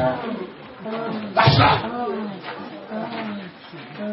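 A person's voice making wordless cries and moans, with a loud harsh outburst about a second and a half in.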